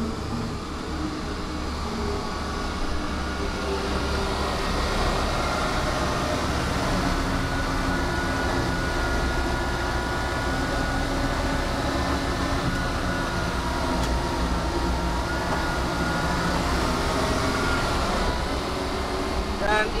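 Pindad Anoa 6x6 armoured personnel carrier under way, heard from inside its troop compartment: a steady low rumble with a high, even whine over it, building a little in the first few seconds. The whine gives it a turbine-like sound rather than that of a diesel.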